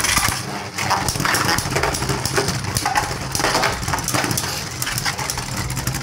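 Two Beyblade Burst spinning tops, one of them Prominence Phoenix, whirring across a plastic stadium floor with a dense run of rapid clicks and clatter.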